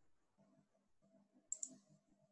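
Two quick, sharp clicks close together about a second and a half in, over near silence.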